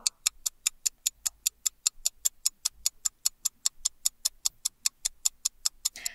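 Countdown-timer ticking sound effect, an even run of sharp ticks at about five a second, marking a ten-second time limit running out.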